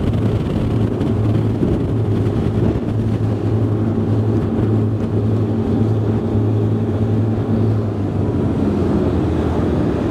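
Twin Volvo Penta D6 diesel engines with Duoprop drives running flat out through a full-speed turn, a steady drone under loud rushing wind noise on the microphone.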